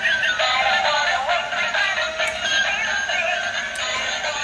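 Music with a synthesized singing voice, thin-sounding with almost no bass, playing continuously.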